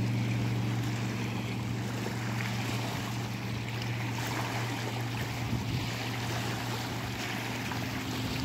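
Steady low drone of a motorboat engine out on the lake, with small waves lapping at the rocky shore.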